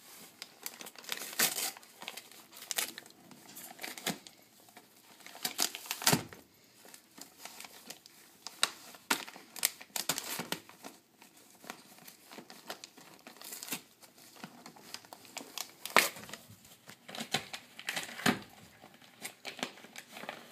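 Gift wrapping paper crinkling and tearing as a dog paws and bites at a wrapped present, in irregular bursts of rustling and ripping with short pauses between.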